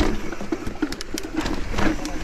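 Mountain bike riding fast downhill on a dirt singletrack: the tyres rumble and crunch over dirt, roots and dry leaves, and the frame and parts rattle and knock with each bump.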